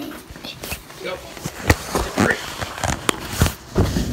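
A few sharp knocks and rustling from handling, mixed with brief speech.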